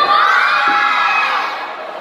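A group of young judo students shouting together in one long call that rises at the start and fades after about a second and a half.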